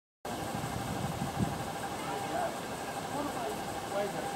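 Outdoor background hiss with faint, indistinct distant voices and a brief low bump about a second and a half in.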